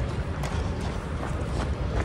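Outdoor street noise on a rainy night: a steady low rumble from wind on the handheld microphone, with a light hiss and a few faint ticks.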